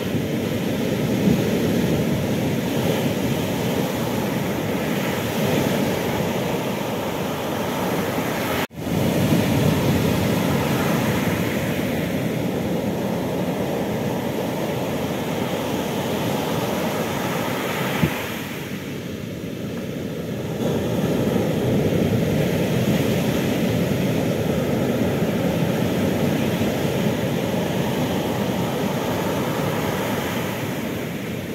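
Heavy storm surf breaking and washing up the beach: a continuous deep rush that swells and eases with the waves. The sound cuts out for an instant about nine seconds in, and eases for a few seconds past the middle.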